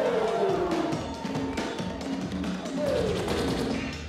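Hip-hop break music played by the DJ over the sound system, with a beat and a falling pitched sweep twice, once at the start and once near the end.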